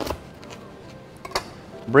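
Knife cutting a head of garlic in half on a plastic cutting board, the blade knocking on the board at the start. A second light knock comes about a second and a half in, over soft background music.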